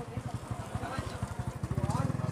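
An engine idling with a steady, rapid low putter, under faint voices.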